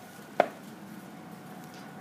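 A single short thump about half a second in as the folded-back corner of a hand-knotted wool carpet drops flat onto the rug, over low room noise.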